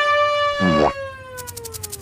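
Cartoon sound effects: a long sustained tone that slowly falls in pitch, with a quick rising sweep about half a second in, then a rapid run of sharp clicks near the end.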